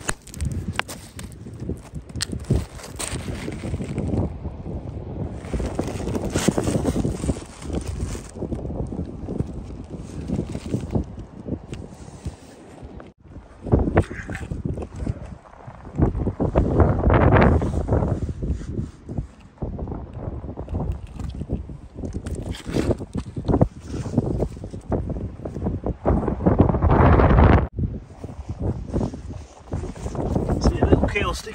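Boots crunching over a shingle beach, pebbles clicking and shifting underfoot, with wind buffeting the microphone in strong gusts twice in the second half.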